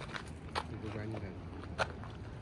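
Indistinct voices of people talking quietly, with a few short sharp sounds among them, two of them standing out about half a second and nearly two seconds in.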